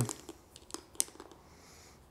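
A few faint, sharp clicks as the seat-post clamp on the underside of a bicycle saddle is handled and worked loose by hand, the sharpest about a second in.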